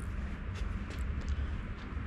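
Tractor engine idling, a low steady rumble, with a few faint clicks over it.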